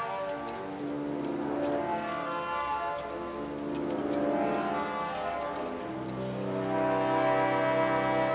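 Rieger pipe organ playing slow sustained chords on its gamba, a stop voiced to imitate a bowed string and slow to speak. The sound swells twice, loudest near the end, with faint clicks of the key action under the tone.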